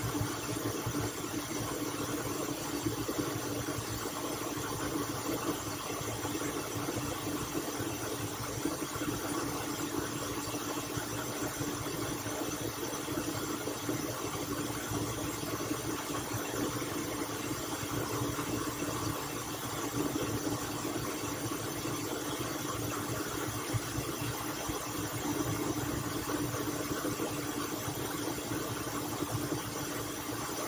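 Countertop blender motor running at a steady speed, blending a frozen shake of ice, ice cream and oat milk. It hums evenly with one constant low tone and no change in pitch.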